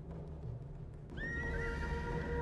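A horse whinnies about a second in, a short wavering call, over a low drumming of running hooves. Held musical notes enter with the whinny.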